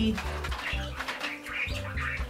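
Soft parakeet chirps and twitters over steady background music.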